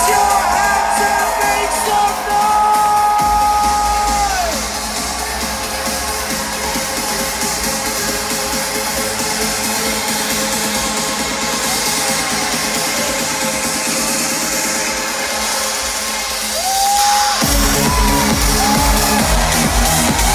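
Loud electronic dance music over a festival sound system: a sung vocal line at first, then a breakdown without bass or kick drum, with the beat and bass coming back in abruptly near the end.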